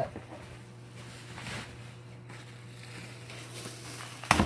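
Faint rustling and crinkling of packing material and bubble wrap being handled in a cardboard box, with a couple of slightly louder crinkles partway through, over a steady low hum.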